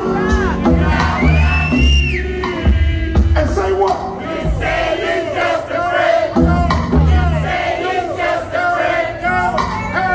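Hip hop beat with heavy bass playing loud over a club PA, with a crowd shouting and cheering over it.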